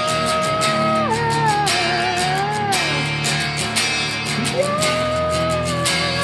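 A singer holds a long wordless high note that drops and wavers about a second in, then swells into another held note near the end. Under it a guitar is strummed in a steady rhythm.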